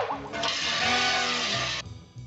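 Cartoon soundtrack: a sudden loud musical accent, then a loud hissing noise held for over a second over a few sustained low notes, cutting off near the end.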